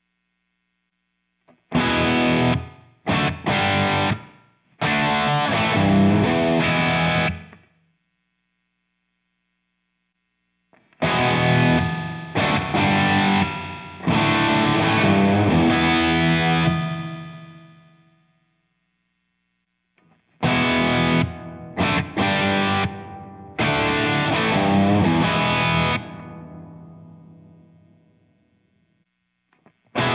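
Distorted electric guitar played through a tube amp and the Two Notes Torpedo Captor X's speaker-cabinet simulation and reverb, in three short phrases separated by silences. The second phrase, on the Cathedral reverb setting, and the third phrase each ring out in a long reverb tail that fades away over a few seconds.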